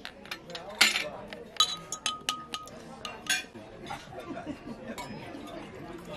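Tableware clinking at a dinner table: several sharp clinks of metal shakers and glassware in the first few seconds, the loudest about a second in, one leaving a glass ringing briefly.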